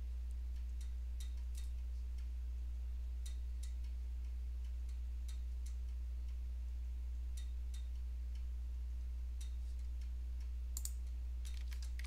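Faint computer mouse clicks, scattered every second or so, over a steady low electrical hum.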